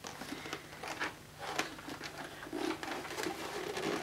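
Faint handling noise: soft rustling with a few light taps and clicks as the plastic ball-shaped body of a Dyson Cinetic Big Ball vacuum is turned over in the hands.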